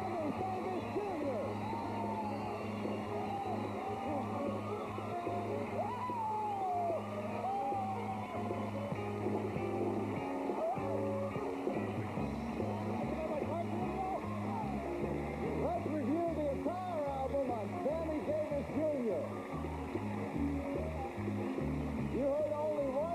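Studio band playing upbeat music over a studio audience cheering and applauding, celebrating a correct $10,000 answer.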